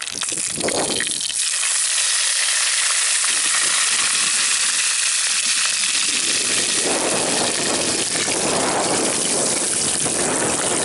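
Chopped greens sizzling in hot oil in a terracotta clay pot over a wood fire, starting suddenly about a second in as they hit the oil and then holding steady. Later on the greens are stirred in the pot.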